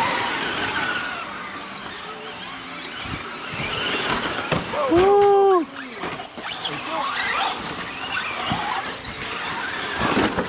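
Electric motors of Traxxas Slash short-course RC trucks whining as they race. About halfway through, one high-pitched motor whine sweeps sharply up and back down over about a second; it is the loudest sound.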